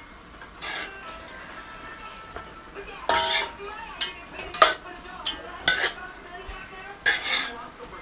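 A spoon stirring wet, steamed cabbage in a metal pot: soft rustling of the leaves, then a run of irregular sharp knocks and scrapes against the pot from about three seconds in.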